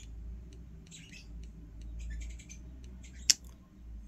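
Soft, irregular clicks of a Flipper Zero's directional pad as a thumb presses it repeatedly to scroll down a menu, with light rustling of the hand on the device. One sharper, louder click comes just after three seconds in.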